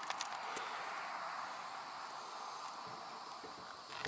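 Steady chorus of summer insects buzzing in roadside vegetation, an even high hiss with no pauses, with a few faint ticks about a split second in.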